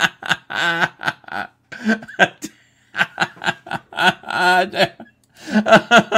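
A man laughing in several bouts of quick, pulsing chuckles, with two short pauses between them.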